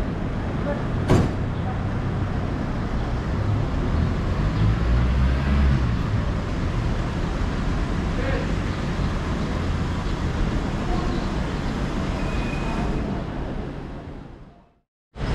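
Road traffic and people talking at a covered airport curbside: vehicles idling and passing under a concrete overpass, with voices in the background. A sharp knock comes about a second in, and the sound fades out near the end.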